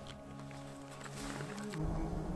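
Quiet background music of held notes, shifting to a fuller, lower chord near the end.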